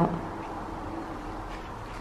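Steady low hum of room tone in a small tiled bathroom, with no distinct events.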